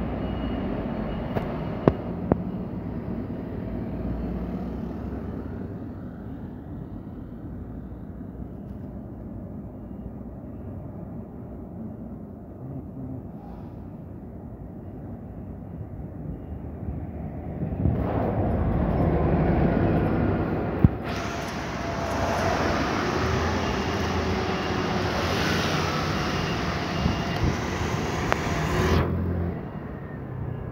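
City bus engine running amid street traffic at a bus terminal, a steady low rumble. About two thirds in it grows louder and harsher, then drops back abruptly just before the end.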